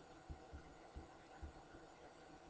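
Near silence: faint room tone with four soft, low thumps spread across about a second and a half.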